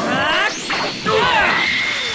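Cartoon fight sound effects: a rush with pitches sweeping down in the first half second, then hits and crashes.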